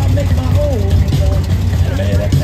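Chevrolet Corvair convertible's air-cooled flat-six idling with a steady low exhaust rumble.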